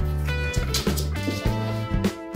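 Background music with a steady beat, plucked notes over a sustained bass line.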